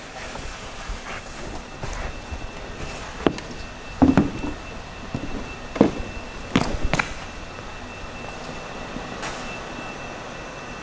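A handful of knocks and thumps as someone climbs out of the aircraft cabin and steps down onto the hangar's concrete floor. They fall between about three and seven seconds in, the loudest near four seconds. A faint steady high tone runs beneath.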